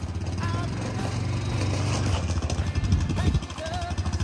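Small petrol engine idling with a fast, even put-put, most likely the gas golf cart's, with a few brief voices over it.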